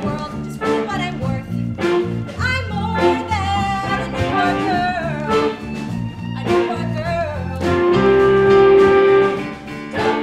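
Live band playing swing-style dance music, with saxophones and drums, building to a long held note near the end.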